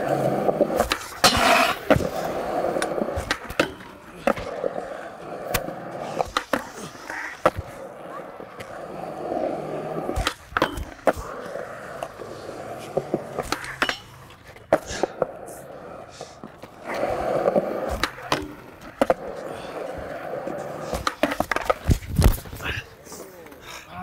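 Skateboard wheels rolling on concrete, with repeated sharp clacks of the board popping and landing. Near the end there is a heavy slam as the skater falls onto the concrete.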